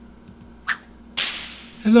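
A faint click, then a sharp swoosh sound effect from an intro clip being played back: sudden onset and fading over about half a second.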